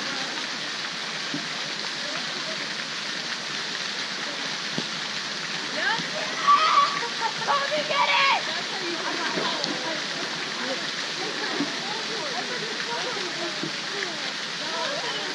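Steady rush of water pouring from a pool's tree-shaped fountain into the pool, with children splashing. Voices rise over it, loudest about six to eight seconds in.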